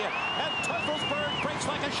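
Large racetrack crowd cheering and shouting as the field breaks from the starting gate, a dense mass of overlapping voices. One long high-pitched whistle rises above it for the first second and a half.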